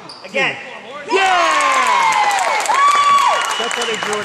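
Basketball game sounds in a gym: sneakers squeaking on the hardwood floor and voices calling out as players scramble under the basket and run back up the court, getting busier about a second in.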